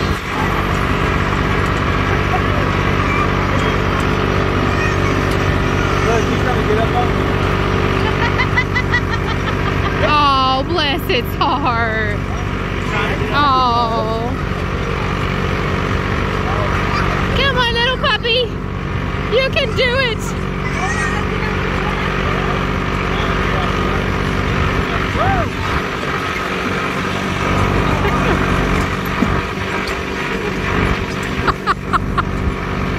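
Steady engine drone of the vehicle towing an open passenger wagon along a dirt track, running at an even pace with the wagon rumbling along. People talk over it in two stretches near the middle.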